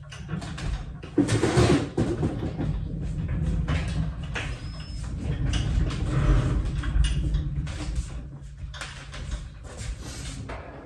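Steel shop crane (engine hoist) loaded with a Bridgeport mill's ram and turret being pushed and handled: a continuous low rumble with scattered metal knocks and clanks, loudest just over a second in and again about seven seconds in.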